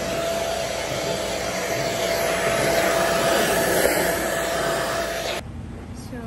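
Deerma cordless stick vacuum running: a steady motor whine over a rush of air, which cuts off suddenly near the end.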